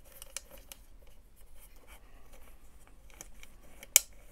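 Light clicks and scrapes of a tail-tidy bracket and its screws being handled and fitted by hand under a motorcycle seat, with one sharp click just before the end.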